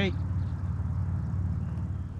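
A low, steady motor drone with a faint hiss over it.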